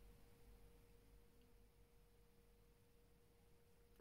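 Near silence: faint room tone with a thin, steady tone held throughout, which stops as speech returns.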